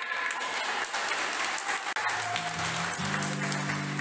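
A group of people clapping their hands in a dense patter of claps. About halfway through, strummed acoustic guitar music comes in and grows louder.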